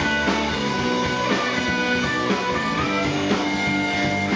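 Live rock band playing an instrumental passage: electric guitars over bass and drums, with a guitar line of held notes, some of them sliding in pitch.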